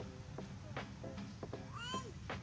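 A long-tailed macaque giving a short, high, mew-like coo call that rises in pitch near the end, after a few sharp clicks.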